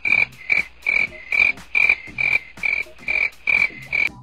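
Comic sound effect of a frog croaking in a steady rhythm, about two and a half short calls a second, filling an awkward pause and cutting off abruptly.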